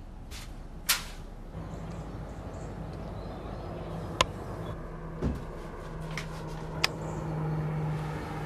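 A low steady hum that grows louder in the second half, with a few sharp clicks or knocks, the loudest about a second in.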